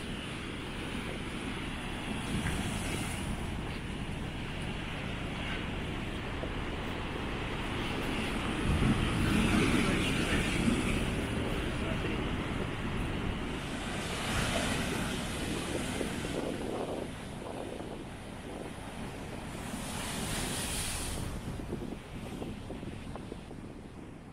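Ocean surf breaking and washing over a rocky shore, swelling louder a few times with each set of waves, with wind buffeting the microphone.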